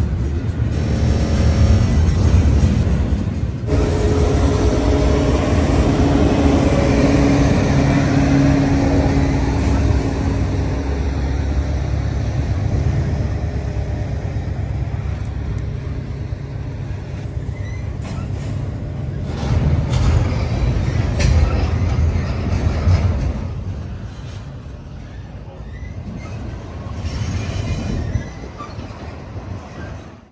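Double-stack intermodal freight train's well cars rolling past at close range: a steady low rumble of steel wheels and trucks on the rail, louder through the first two-thirds and easing off after about 23 seconds.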